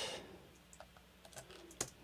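A few faint, scattered clicks of a computer keyboard, the last and clearest near the end.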